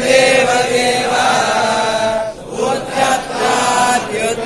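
A large group of men chanting Sanskrit verses in unison, a ritual recitation read from books. The chanting breaks briefly for breath a little past the middle, then resumes.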